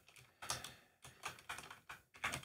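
Faint, scattered keystrokes on a computer keyboard, several separate taps.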